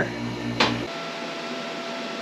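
VEVOR chamber vacuum sealer mid-cycle: the vacuum pump hums, then about half a second in there is a sharp click and the pump cuts off abruptly. A faint steady whine follows as the machine moves on to heat-sealing the bag.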